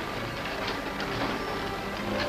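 Horse-drawn freight wagon pulled by a team of two horses: hooves clopping and the wagon rattling as it rolls along.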